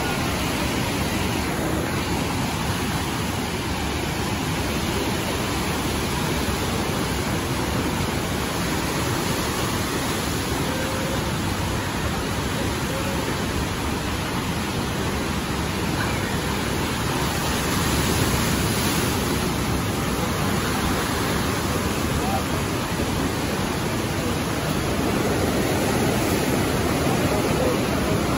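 Steady rushing of the Niagara River's class 6 whitewater rapids: an even, continuous roar of churning water that holds its level throughout.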